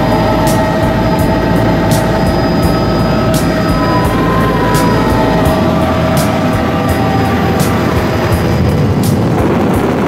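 Helicopter cabin noise heard from inside: the engine and rotor give a loud, steady drone with a constant whine running through it.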